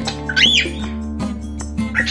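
A cockatiel gives one short whistled call that rises and then falls in pitch, over acoustic guitar music.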